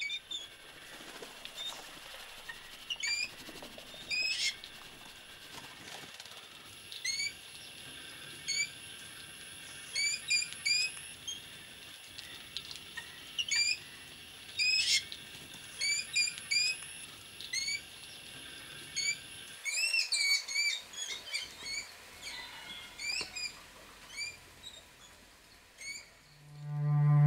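Jungle babblers calling: short squeaky chirps, singly and in pairs every second or so, growing into a busier run of calls about twenty seconds in, over a faint steady high-pitched hum.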